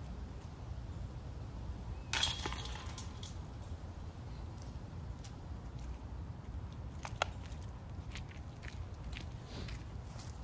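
A putted disc hits the chains of a metal disc golf basket: one short metallic jangle about two seconds in. A single sharp click follows near seven seconds, over a steady low outdoor rumble.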